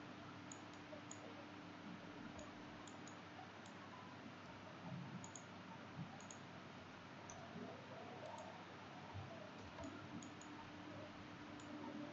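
Faint computer mouse clicks, scattered irregularly and often in pairs, over a low steady hiss.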